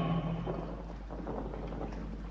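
A pause between spoken lines: a low, steady background hum and faint hiss of an old film soundtrack, with the tail of a man's word at the very start.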